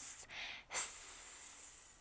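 A woman hissing like a snake through her teeth: a short hiss, then a long, steady hiss of over a second that fades away.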